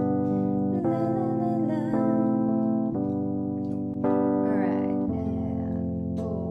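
Keyboard playing slow, held chords, a new chord about every second, as a live accompaniment to a pop song.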